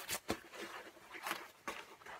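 Handling noise close to the microphone: rustling, with a few light clicks and knocks, as a person moves about and picks up a pair of hockey gloves.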